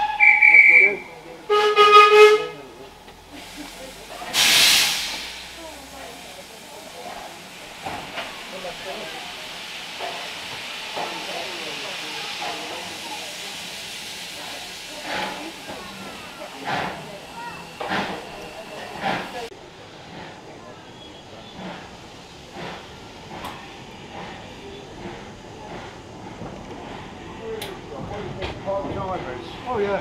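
Whistles from a heritage steam train at a station: a short, shrill whistle, then a steam locomotive's whistle blast about two seconds in. A loud burst of steam follows about four seconds in, then steady steam hissing from the locomotive that stops suddenly around twenty seconds in, leaving soft clicks and clatter.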